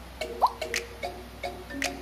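Background music: a light instrumental bed of short, evenly repeating notes with a brief rising blip about half a second in.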